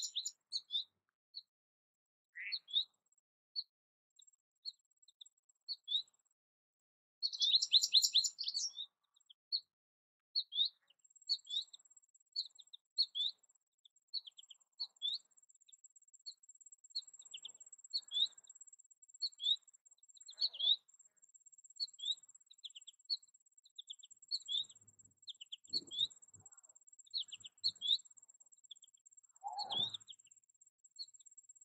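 American goldfinch calling: a series of short, high chip notes, roughly one a second, with a quick twittering burst about eight seconds in. From about a third of the way in, a thin, steady high-pitched buzz runs underneath.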